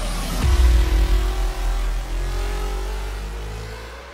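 Cinematic transition sound effect: a falling sweep into a deep bass boom about half a second in, then a slowly rising tone that fades away near the end.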